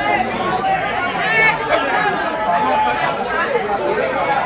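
Crowd chatter: many people talking at once, a steady babble of overlapping voices in a busy hall.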